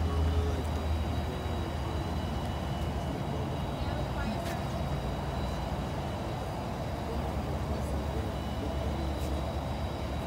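A vehicle engine idling with a steady low hum, stronger at the start and near the end, with faint indistinct voices under it.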